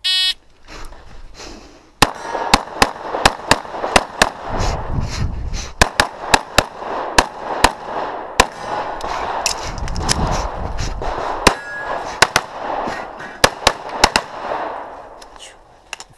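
Electronic shot timer beeps once to start the run; about two seconds later a semi-automatic pistol opens fire in a long string of sharp shots, mostly quick pairs with short gaps between, stopping shortly before the end.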